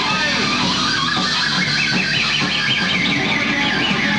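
Live noise-rock band playing loud: distorted electric guitar, drums and saxophone, with a wavering high squealing line over the top through the middle.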